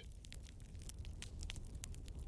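Faint crackling of a wood campfire, with irregular small pops over a low steady hum.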